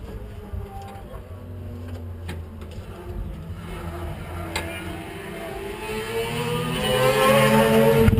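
Race car engine sound: a low, steady engine note, then from about halfway an engine note rising in pitch and growing loud toward the end.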